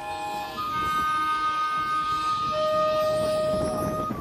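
Drum and bugle corps show music: a few long, steady held notes, a higher one starting about half a second in and a louder, lower one joining about two and a half seconds in.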